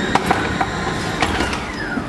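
Airport bag-drop conveyor belt running as it carries a hard-shell suitcase away, with a few sharp knocks and a motor tone that sweeps up and then falls.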